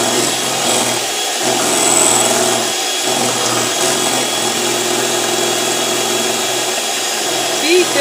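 Electric hand mixer running on high, its beaters whipping a thick egg and cream cheese batter in a glass bowl: a steady motor whir that dips briefly twice in the first few seconds.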